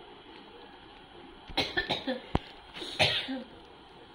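A person coughing: a short run of coughs about a second and a half in, a sharp click, then one more cough about three seconds in.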